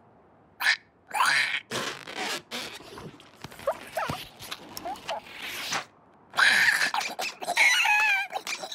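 Cartoon sound effects and a cartoon ostrich's nonverbal vocalizations: a string of short rushes of noise and brief squeaky cries, ending in a loud, wavering shriek.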